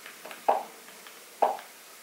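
Two short, sudden mid-pitched blips about a second apart: the Android TV box's menu navigation sound as the remote steps the highlight across the language buttons of the setup screen.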